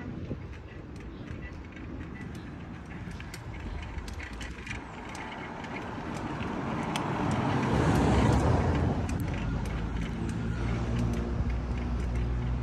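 Road traffic heard from a moving bicycle: a passing car swells to its loudest about eight seconds in, then a car engine runs steadily close by with a low hum. Scattered light clicks run throughout.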